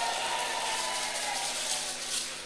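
Steady hiss of a hall's background noise picked up through a speech microphone, with a faint ringing tone that dies away about halfway through.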